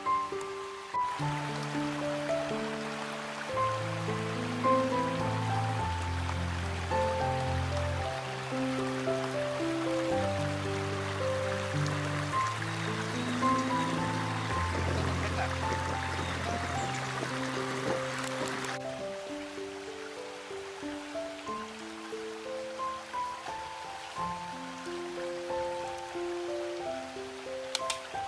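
Background music: a melody of held notes over a slow bass line. Under it, for the first two-thirds, a steady rush of flowing stream water, which cuts off suddenly about nineteen seconds in.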